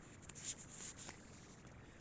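Faint rustle and light scrapes of a tarot card being drawn from the deck and handled, a few soft strokes about half a second and a second in.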